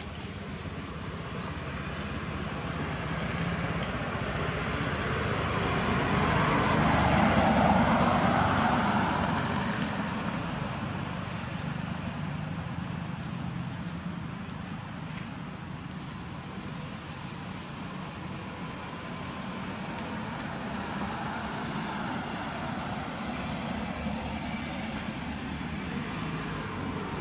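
A motor vehicle passing: a steady noise that swells to its loudest about eight seconds in, then fades back to a steady background hum.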